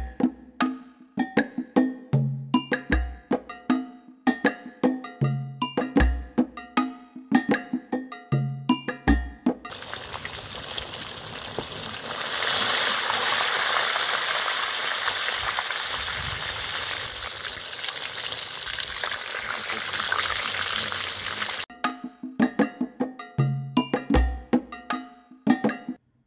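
Background music with a steady beat. About ten seconds in it gives way to the steady sizzle of coated fish deep-frying in hot coconut oil in a pan, loudest a few seconds after it starts. The sizzle lasts about twelve seconds, then cuts off and the music returns.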